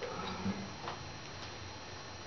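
Acoustic guitar being handled and shifted about: a few faint knocks and clicks from the body and strings, with no playing.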